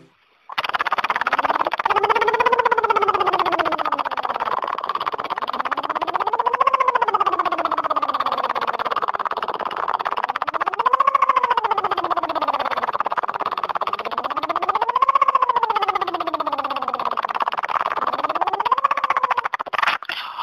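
A singer's lip trill sirens: lips buzzing while the voice glides up in pitch and back down, five times, about one every four seconds, as a vocal warm-up. The sound comes through a voice-note recording.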